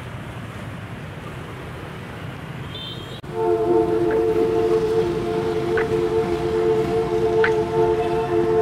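Street traffic noise with wind on the microphone for about three seconds, then an abrupt cut to background music: a steady held chord that runs on unchanged.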